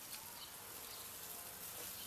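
Faint, steady sizzling of hot dogs cooking over a charcoal kettle grill.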